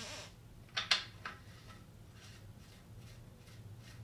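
Faint handling of a small metal oil-tank drain plug as its threads are coated with Teflon paste and it is fitted by hand: a few small clicks about a second in, over a faint steady low hum.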